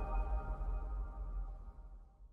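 Ringing tail of a logo sting: several steady tones over a low rumble, fading away.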